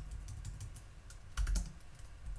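Typing on a computer keyboard: scattered key clicks, with a quick run of several keystrokes about one and a half seconds in, the loudest part.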